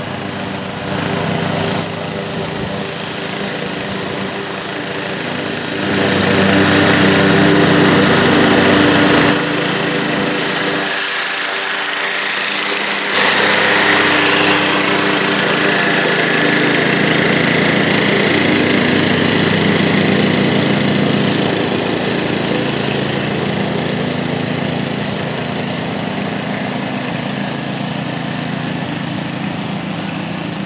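PowerSmart 209cc single-cylinder gas push mower running steadily under load while mulching grass. It grows louder as it passes close by, then fades gradually as it moves away.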